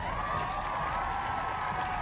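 Studio audience applauding and cheering at the end of a song, with a steady held musical tone sounding over the applause.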